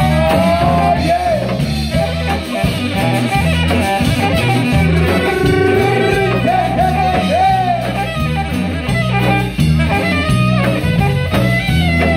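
Live band playing an instrumental stretch of a Spanish-language dance song, with a drum kit, electric guitar and melody lines that slide up and down in pitch.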